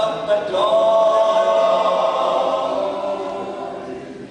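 A men's a cappella group singing in close harmony, without instruments. A chord begins about half a second in, is held, and fades toward the end, with the ring of a large hall around it.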